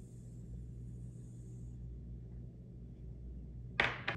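Sugar sliding out of a small glass bowl through a plastic funnel into a glass flask, a faint hiss that stops about two seconds in, over a steady low hum. Near the end a single sharp knock as the glass bowl is set down on the table.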